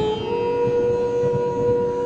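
Instrumental background music in an Indian classical style, holding one long note that steps up slightly in pitch just after the start and then stays steady.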